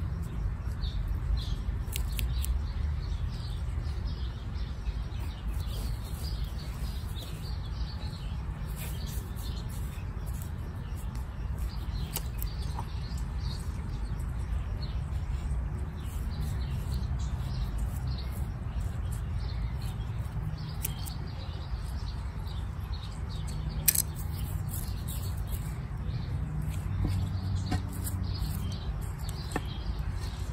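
Small birds chirping in short, scattered calls over a steady low rumble, with a sharp click about 24 seconds in.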